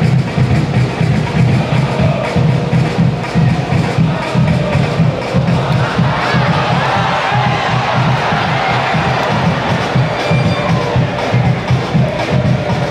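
Selangor FC ultras chanting in unison to a steady bass drum beat, the massed voices swelling in the middle.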